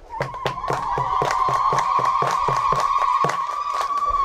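Rhythmic hand clapping from a group, about five claps a second, under one long, steady high-pitched tone that cuts off suddenly near the end.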